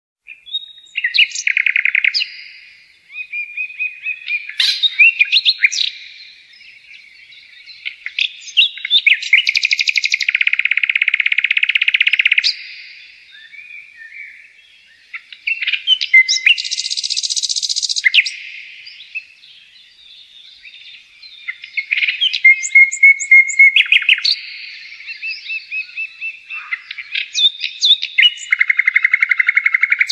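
Songbirds singing in bouts a few seconds apart: quick high chirps and fast trilled phrases, with short quieter pauses between the bouts.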